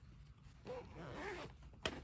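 Zipper on a plush fabric pouch being pulled open in one short buzzy run about halfway through, its pitch wavering with the speed of the pull, then a sharp click near the end.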